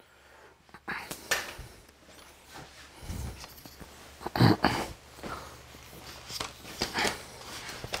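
Footsteps and camera-handling rustles and knocks as someone walks across a small workshop, over a faint steady low hum.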